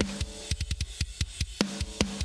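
A metal drum-kit recording, mostly kick and snare, plays back heavily squashed through an SSL bus compressor on a parallel compression track, a fast run of hits several a second. The compression is pushed too far, and the snare loses its smack.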